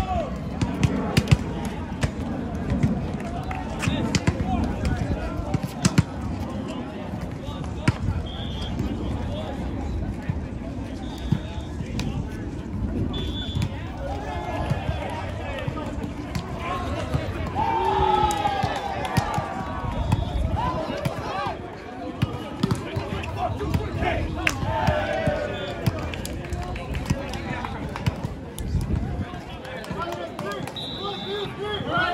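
Players and spectators shouting and talking around an outdoor volleyball game, with sharp slaps and thuds of the ball being hit throughout. A few short high-pitched tones sound in the middle, and the shouting is loudest in the second half.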